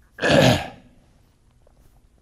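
A man clearing his throat once with a short, loud cough about a quarter of a second in.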